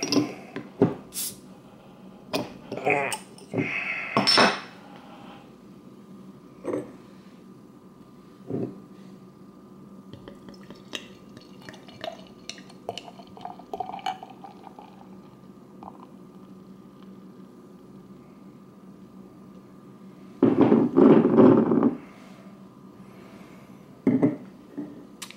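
Glass beer bottle being opened with a bottle opener, with sharp clicks and glass clinks over the first few seconds. Then the beer is poured into a stemmed glass, more faintly, and there is a louder burst of rustling noise near the end.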